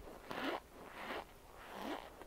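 Chewing a mouthful of cornstarch chunks, heard close up as three crunching chews at a steady pace.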